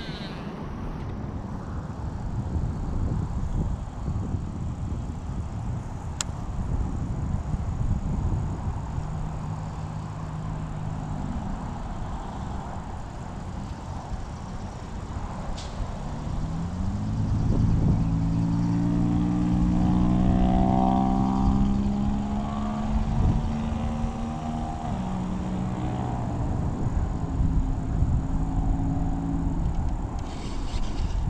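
A motor engine humming steadily, growing louder about halfway through and easing off near the end, over wind noise on the microphone.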